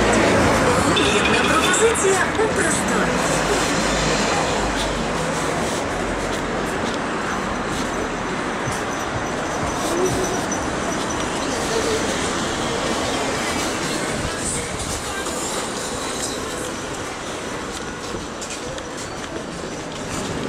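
Busy city street: steady traffic noise with passers-by talking, a low rumble in the first few seconds and the whole slowly fading a little toward the end.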